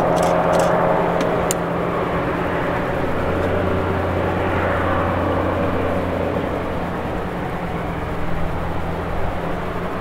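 Train running, with a steady low hum and rolling noise and a few sharp clicks in the first second and a half.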